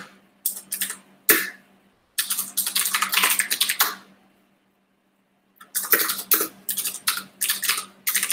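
Fast typing on a computer keyboard in quick runs of keystrokes, with a pause of about a second and a half midway before the typing resumes.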